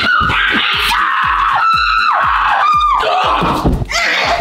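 Background music with a fast steady beat, about four beats a second. About halfway through come two short high-pitched screams, each falling at its end.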